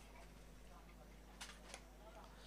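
Near silence on the broadcast feed, with two faint short ticks about one and a half seconds in.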